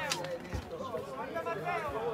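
Players' voices calling and shouting to each other, with two short low thumps, one about half a second in and one near the end.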